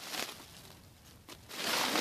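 A sack rustling as it is lifted and shifted while being loaded with scrap iron pieces, with a few faint clicks partway through and a louder burst of rustling over the last half second.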